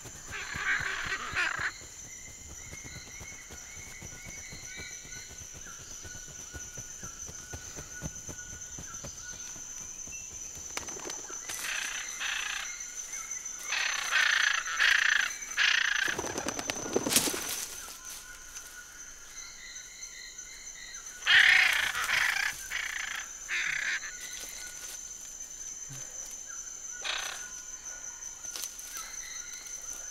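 Tropical forest ambience: a steady high insect drone with faint bird whistles, broken by several louder rough bursts of noise, the strongest about two-thirds of the way through, and one sharp sudden sound just past the middle.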